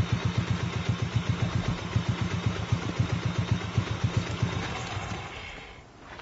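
A motorcycle engine idling with a quick, even beat, dying away near the end.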